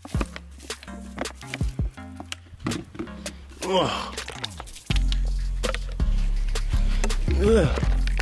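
Background music with a steady bass line; about five seconds in, a heavier, louder bass comes in and the music fills out.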